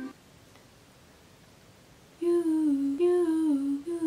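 A girl humming a melody without an instrument, in short phrases that step downward, working out a tune for a song. It starts about two seconds in, after near silence.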